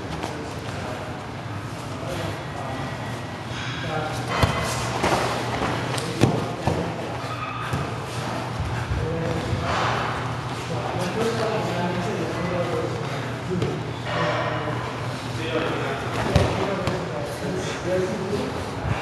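Grapplers' bodies thudding and shifting on foam mats during sparring, with a few sharp thumps, one of the loudest near the end, under indistinct background talk.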